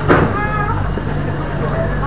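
Indistinct background voices over a steady low mechanical hum.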